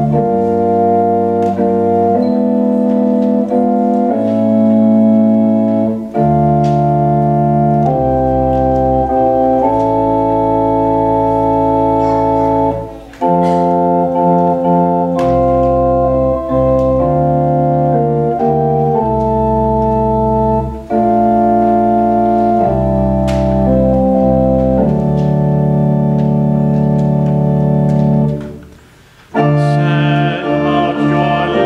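Church organ playing a hymn-like tune in held chords that change every second or two, the introduction to the psalm refrain. The music breaks off briefly about halfway through and pauses again near the end, where a phrase closes.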